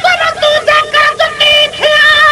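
A high-pitched voice singing a Sindhi naat, moving through a quick, wavering run of short held notes.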